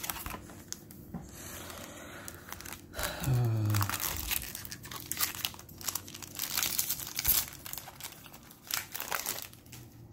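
Foil wrapper of a Yu-Gi-Oh booster pack being torn open and crinkled by hand, with sharp crackles that grow busier from about three seconds in.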